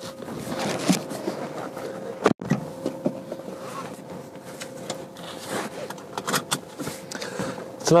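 Clothing rustling, knocks and small clicks as a person climbs into a car's driver's seat, then a seatbelt being drawn across and fastened, with a faint steady hum underneath. The sound cuts out sharply for a moment about a third of the way in.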